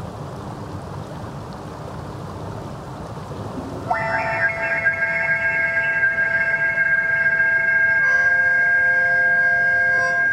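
Running stream water, then about four seconds in a held synthesizer chord comes in through a small speaker. The chord changes to a new one about eight seconds in.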